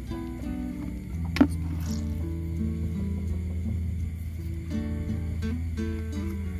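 Background music made of held notes, with a low bass line coming in just after a second in. A single sharp click about a second and a half in is the loudest sound.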